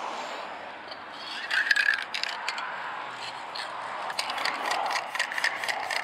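Aerosol spray paint can being shaken, its mixing ball rattling inside in quick irregular clusters of clicks.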